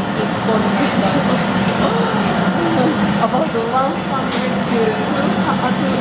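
Silk-reeling machinery running with a steady low hum, voices talking over it and a few faint clicks.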